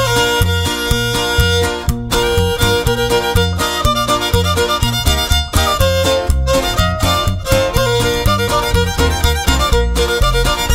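Instrumental opening of a Wixárika (Huichol) string-band song: a violin carries the melody over guitar and a steady bass beat.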